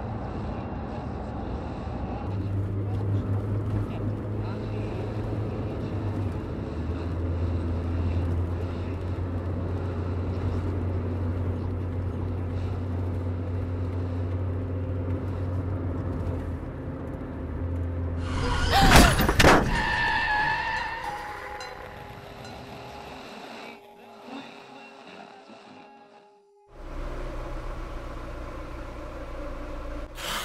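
Soundtrack of a car ride: a steady low engine drone inside the car under a soft music bed. About nineteen seconds in comes a sudden, very loud burst with sharp knocks, which dies away to near quiet before the low drone returns near the end.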